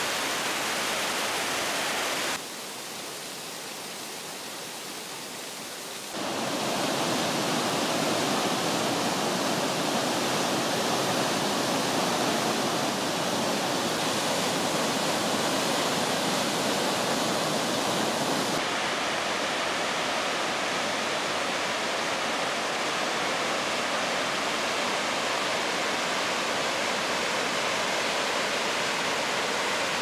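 Steady rushing of a large waterfall, the Sainte-Anne River plunging in stages through the Sainte-Anne Canyon's rock gorge. It drops quieter for a few seconds about two seconds in, comes back fuller after about six seconds, and turns slightly duller about two-thirds of the way through.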